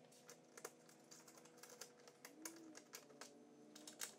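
Faint, irregular small clicks and taps of a hex key working Allen head screws out of the back of a golf cart's plastic dash.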